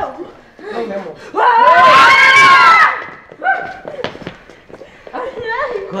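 A young teenager screams once, loud and held for about a second and a half, starting about a second and a half in, amid short bursts of excited voices.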